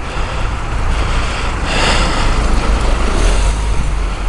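Wind rumble and road noise on a moving bicycle camera's microphone, with traffic on the road, swelling louder for about a second around two seconds in.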